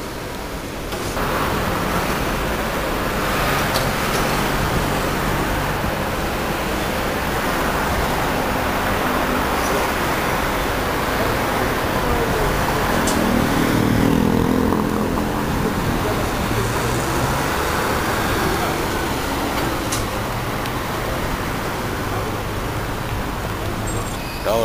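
Busy city street traffic: a steady wash of car and engine noise from vehicles passing through an intersection. One engine grows louder around the middle.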